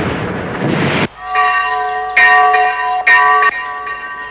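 A dense din of battle noise for about the first second, cut off abruptly. Then a church bell tolls three times, about a second apart, each strike ringing on.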